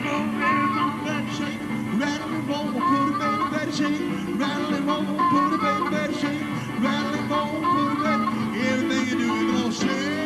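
Live blues band performance with piano accompaniment. A lead melody line bends up and down in pitch over held chords.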